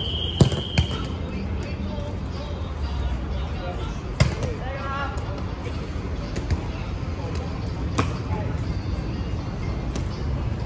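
Dodgeballs being thrown during warm-up and striking the court or walls: a few sharp thuds, two close together in the first second, one about four seconds in and another near eight seconds. A steady low rumble runs underneath.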